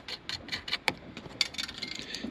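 Light, irregular clicks and taps of a small 10 mm nut being turned off a door-mirror mounting stud by hand.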